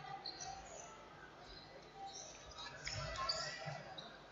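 Faint sports-hall sound during indoor football play: short high squeaks of trainers on the court floor and a few dull ball thumps, with distant voices from the crowd.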